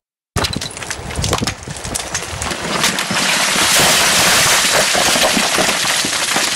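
Rockfall: stones and boulders breaking off a cliff and crashing onto a road, a crackling clatter of many impacts that grows louder and denser about halfway through.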